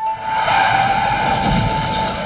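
Film sound effects of a car skidding with tires squealing. Near the end a low crash comes in as the car smashes through the wooden side of a covered bridge.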